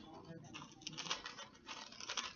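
Faint handling noises: scattered light rustles and clicks, with a low murmur of voice under them.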